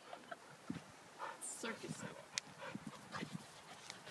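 Two dogs play-wrestling, with faint scuffling, a few brief soft dog sounds and scattered clicks.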